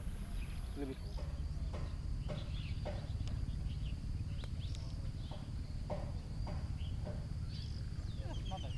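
Outdoor ambience: a steady low rumble of wind on the microphone, with short faint chirps repeating about every half second and a few higher bird-like calls.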